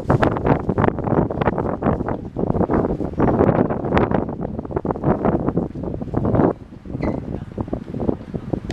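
Wind buffeting the microphone: a loud, gusty rumble that surges unevenly and briefly drops away about six and a half seconds in.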